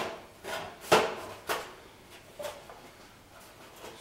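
A handful of knocks and scrapes from a steel Jaguar E-type door frame being handled and shifted on a workbench, the loudest about a second in, then fainter ones.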